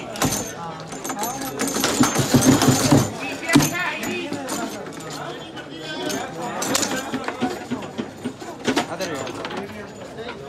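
Overlapping crowd voices around a foosball game in play, with sharp clacks from the wooden table's plastic players and rods striking the ball; one clack about three and a half seconds in is the loudest.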